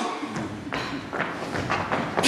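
A handful of irregular thuds and taps of footsteps on a stage floor as performers hurry across it.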